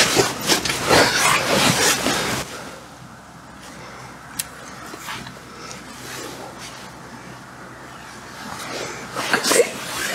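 Handling noise from setting up a camera and long lens on a tripod: clothing and fabric rustling and gear being moved for the first couple of seconds, then softer fumbling with one sharp click a little over four seconds in.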